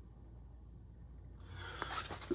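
Quiet room with a steady low hum; about a second and a half in, a man's breathing grows louder, a breathy rush of air ahead of a cough.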